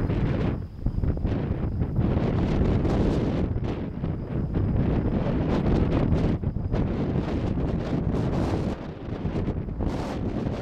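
Wind buffeting the camera microphone: a steady, dense rumble that eases briefly near the end.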